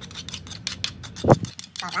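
A metal spoon scraping against a small bowl in a quick run of sharp clicking strokes as dressing is scraped out of it, with one loud thump a little past the middle. A voice comes in near the end.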